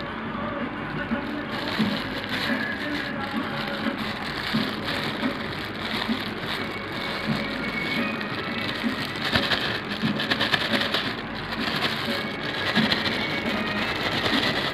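Clear plastic bag crinkling and rustling as it is handled and squeezed to empty cooked rice onto a plate.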